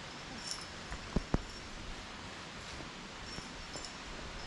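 Steady outdoor background hiss, with a few sharp clicks close together about a second in.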